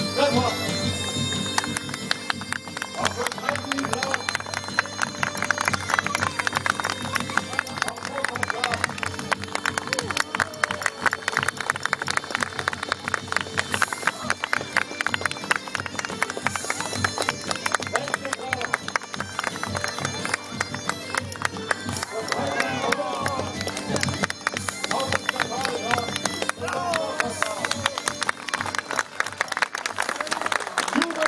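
Bagpipe music with a steady drone, over the beat of horses' hooves cantering on grass. Voices call out in the second half.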